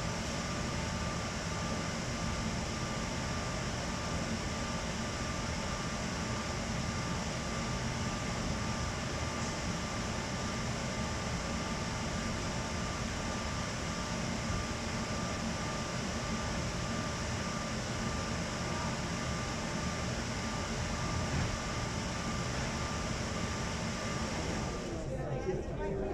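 Steady engine-room machinery noise aboard a car ferry: an even drone with a few steady hum tones running through it.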